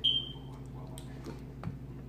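A metal fork clinks against a bowl once with a short high ring that quickly dies away, followed by a few faint light taps.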